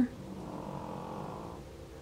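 Small cosmetic sponge rubbing across a vinyl doll's cheek while blending paint: a soft, fast rasping rub that fades out about a second and a half in.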